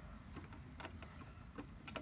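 Faint room noise with a few soft, scattered clicks.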